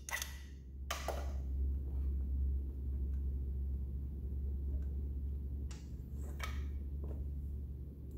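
Compression tester being removed from an engine: a few short clicks and scrapes as the gauge's hose fitting is handled and unscrewed from the spark plug hole, over a steady low hum.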